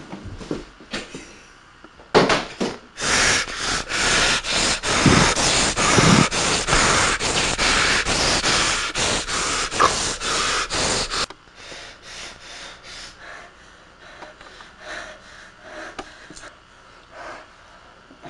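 A person breathing hard and snorting in loud, rapid puffs for about nine seconds, stopping abruptly, then softer rhythmic puffs of breath.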